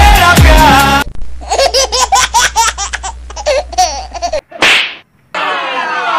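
Background music with a thudding beat cuts off about a second in. It gives way to a comic laughing sound effect: about three seconds of rapid, high-pitched, stuttering laughter. A brief swish follows, then another burst with falling tones.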